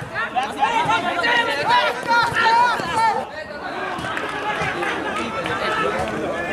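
Many voices at a handball game shouting and chattering at once, loud and high-pitched in the first half. From about three seconds in it gives way to a softer babble of talk.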